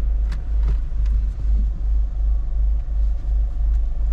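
Low, steady rumble inside a Citroën car's cabin while driving: engine and road noise, with a few faint clicks.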